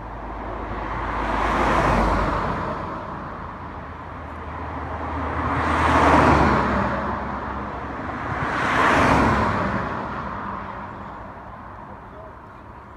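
Three cars passing one after another, each a swell of tyre and road noise that rises and fades. The loudest passes about six seconds in.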